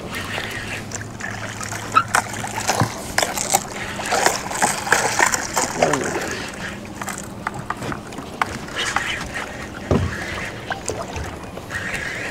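Water splashing and sloshing against the hull of a small fishing boat, with scattered sharp clicks and knocks and a few brief low words.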